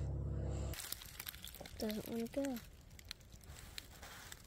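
Faint crunching and crackling of dry leaves and brush, with scattered light clicks. A low steady hum cuts off abruptly under a second in.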